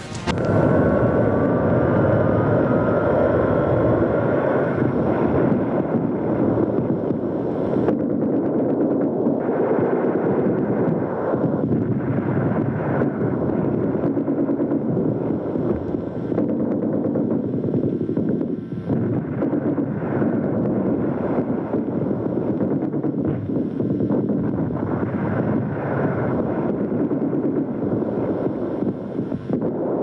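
Battle sound of continuous gunfire and explosions: a loud, unbroken din of rapid crackling shots with artillery blasts mixed in.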